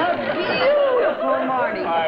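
Speech only: voices talking, with no other sound standing out.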